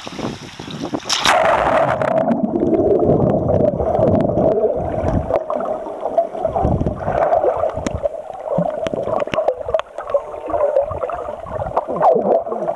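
A camera going under the sea surface about a second in, then muffled underwater sound: water gurgling and sloshing against the camera, with a steady drone and scattered small crackles.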